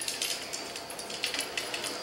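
Light, irregular clicks and taps as a long fishing rod is handled and lifted from its stand.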